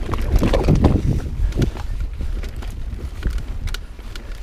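Mountain bike riding a singletrack trail: the tyres and frame knock and rattle over bumps, with wind rumbling on the camera's microphone. The knocks come thickest in the first second and a half, then ease to scattered clicks.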